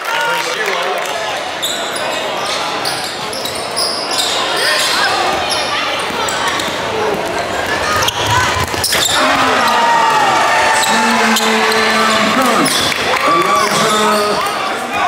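Live basketball game audio: a basketball bouncing and dribbling on a hardwood gym floor, with players' and spectators' voices calling out throughout.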